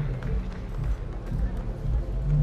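Steady background ambience of an outdoor sports venue: a low rumble with faint murmur and no distinct events.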